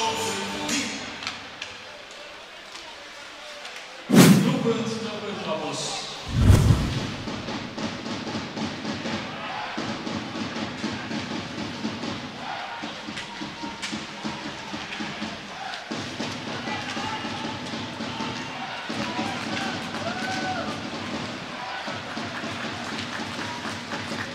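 Ice hockey play with two loud impacts, about four and six and a half seconds in, then music with a steady beat running on under faint voices.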